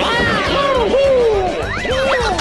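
Cartoon soundtrack: a quick string of comical rising-and-falling pitch glides over music.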